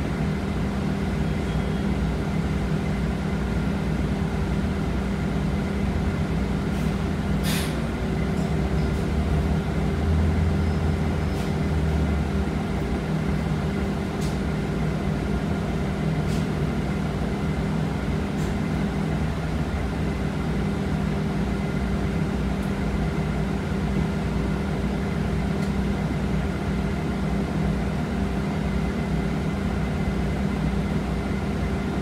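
Cabin noise inside a 2019 Nova Bus LFS city bus under way: a steady running hum with several steady tones. There are a few light clicks and rattles, and a short hiss about seven and a half seconds in.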